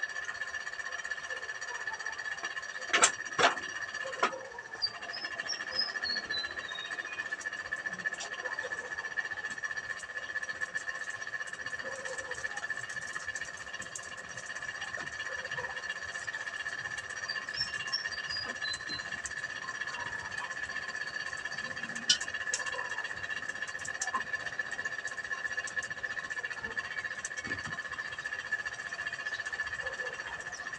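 A heap of straw burning, with scattered small crackles, over a constant high-pitched drone. Two sharp knocks come about three seconds in, and a short descending run of high chirps sounds twice.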